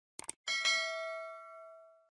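Subscribe-button animation sound effect: quick mouse clicks, then a bright bell chime struck twice in quick succession that rings and fades out over about a second and a half.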